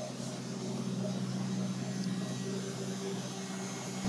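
Steady low machine hum with a faint hiss of room noise, holding even throughout with no distinct knocks or clatter.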